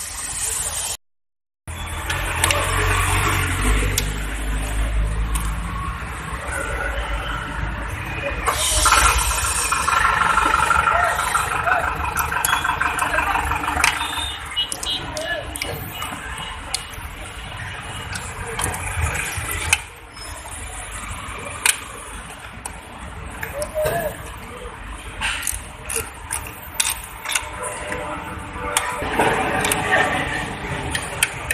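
Workshop sounds around a car's engine bay: a low rumble in the first few seconds, then scattered sharp metallic clicks and knocks from hand tools, with voices in the background.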